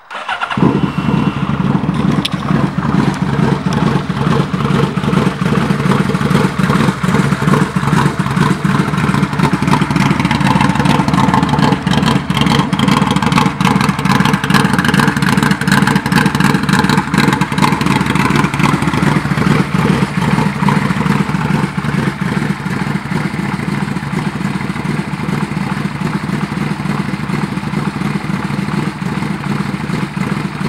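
A 2007 Yamaha V-Max trike's V4 engine comes in suddenly about half a second in and then runs steadily and loudly. Its pitch dips and recovers once around the middle.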